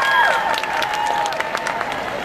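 Auditorium crowd clapping and cheering. High-pitched shouts and screams fade out within the first second, leaving dense clapping.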